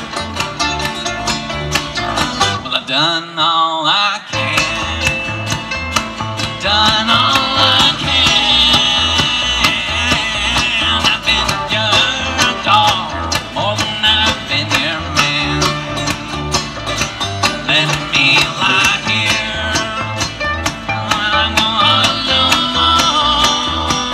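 Live bluegrass band playing an instrumental passage: mandolin and acoustic guitar picking over a steady upright bass pulse. The bass drops out for about a second near the start.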